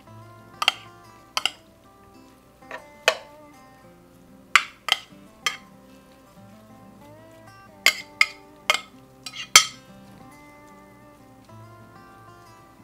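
A metal utensil clinking and scraping against a ceramic baking dish and a frying pan as seasoned venison cubes are pushed into the pan and stirred, about ten sharp clinks spread unevenly through. Background music with steady held notes plays underneath.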